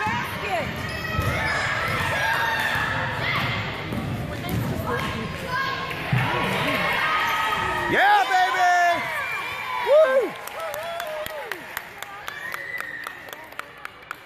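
Youth basketball in a gym: spectators talking over one another, then, from about eight seconds in, sneakers squeaking on the court floor and a basketball bouncing in a run of sharp knocks.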